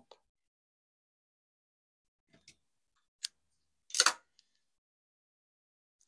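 Near silence broken by a few faint clicks, about two and a half and three seconds in, and a short, louder scrape about four seconds in: small handling sounds of fabric and thread at a sewing machine.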